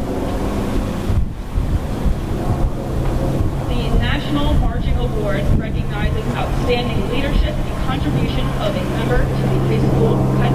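Wind rumbling on an outdoor microphone over a steady low hum. Faint distant voices come in from about four seconds on.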